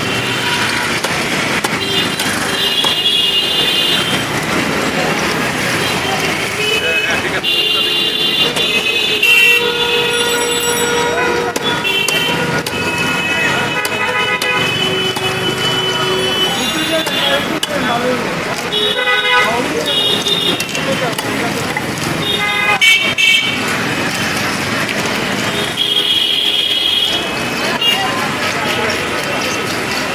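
Busy street-market noise: constant chatter of voices and vehicle horns honking again and again. A couple of sharp knocks stand out, from a wooden stick beating a cleaver through a large fish.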